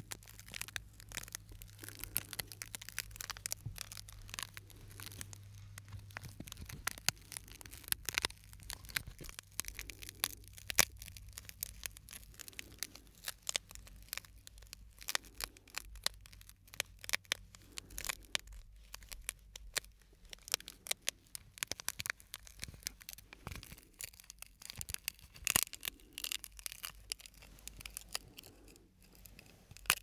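A small piece of cracked, broken glass being handled and flexed between the fingers, giving dense, irregular sharp crackles and clicks with short pauses.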